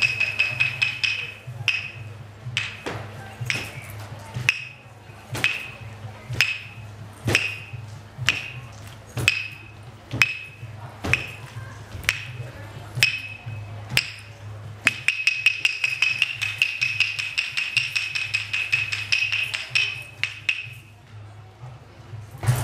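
Wooden clapsticks struck together with a short ringing tone to each strike: a fast roll of clicks, then a steady beat of about one strike a second, then a fast roll again from about fifteen seconds in that stops just before the end. A steady low hum runs underneath.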